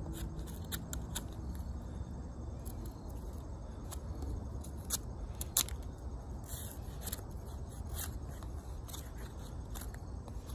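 OdenWolf W3 fixed-blade knife shaving bark off a green stick in short, irregular scraping strokes, with one sharper stroke a little past the middle.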